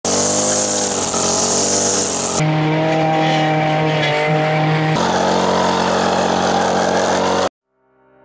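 Bu-Ko 52cc two-stroke petrol strimmer running at high revs while cutting grass, in three short clips joined by abrupt changes about two and a half and five seconds in. It stops suddenly shortly before the end.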